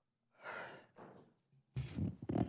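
A soft, breathy sigh from a person about half a second in. Near the end a louder noise with a low hum begins.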